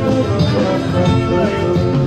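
Instrumental music with held notes.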